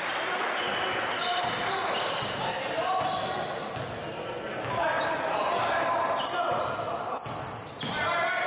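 A basketball being dribbled on a hardwood gym floor, with players' and spectators' voices calling out, echoing in a large gym.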